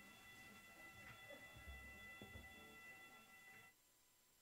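Near silence, apart from a faint, steady, high-pitched fire alarm tone and a few soft low thumps. Everything cuts out abruptly near the end.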